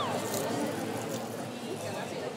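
Background chatter of diners, a low murmur of voices with no clear words. The tail of a falling, whistle-like sound effect fades out at the very start.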